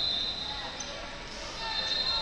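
A long, steady, high whistle blast that fades out about half a second in, with another starting near the end, over the voices and hubbub of a busy wrestling hall.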